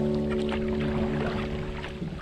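A strummed acoustic guitar chord rings out and fades away near the end, over light splashing and dripping of a kayak paddle in the water.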